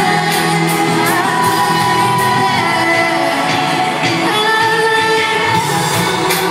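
Live pop music played loud in an arena: a singer holds long notes over a full band with a steady drum beat, echoing in the large hall.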